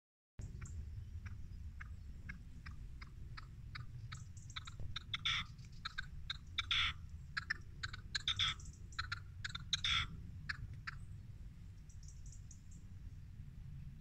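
A cat chattering at a bird: a run of short dry clicks, a few a second, swelling into louder clustered bursts in the middle and stopping about eleven seconds in.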